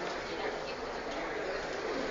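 Indistinct, echoing voices and murmur in a large hall, steady and much quieter than the speech around it.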